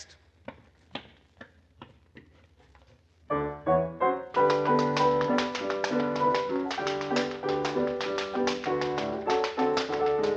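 Tap shoes clicking faintly a few times, then about three seconds in a piano starts a time-step rhythm and a tap dancer joins in with quick taps over it, heard on a 1946 radio recording.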